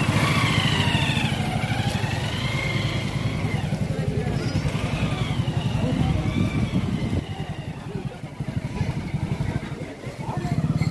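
Motorcycle engine running at low speed, heard from on the bike, with its low rumble easing off for a moment between about seven and nine seconds in before picking up again. Voices carry faintly over it.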